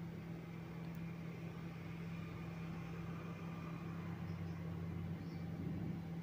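Brinjal bajji deep-frying in a kadai of hot oil: a steady, faint sizzle over a constant low hum, the fritters nearly golden brown.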